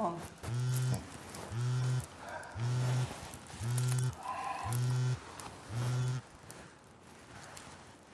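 Mobile phone on vibrate, buzzing in short, even pulses about once a second for an incoming call; the buzzing stops about six seconds in.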